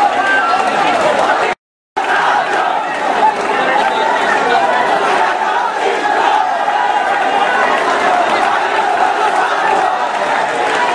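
A large crowd of many voices shouting and talking at once. The sound cuts out completely for a moment about one and a half seconds in.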